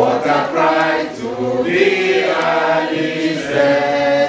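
A group of voices singing a chant-like song together, with no instruments to be heard.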